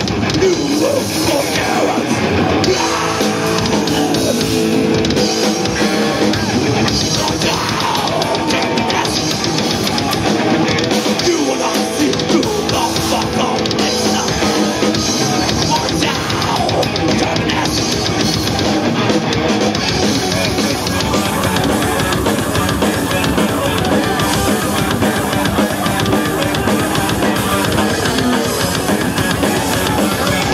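Heavy metal band playing live: electric guitar and drum kit, loud and continuous.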